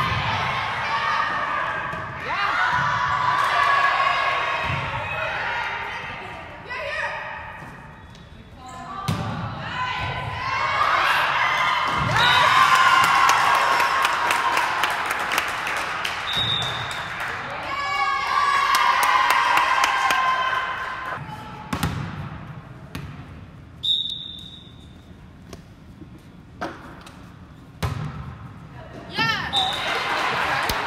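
Volleyball being played in a gym: sharp thuds of the ball off players' hands and the floor, with players and spectators shouting and cheering in between. A referee's whistle gives short blasts several times, about twelve seconds in, near the middle, and twice near the end.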